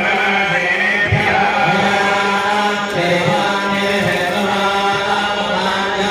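Continuous chanting of Sanskrit mantras in a single voice line over a steady low drone.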